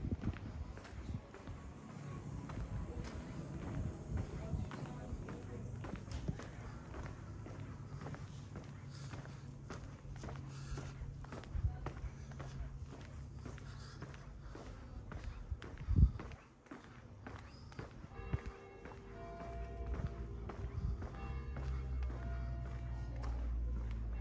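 Footsteps of someone walking on pavement at a steady pace, with faint music and steady tones coming in near the end. A single sharp thump stands out about two-thirds of the way through.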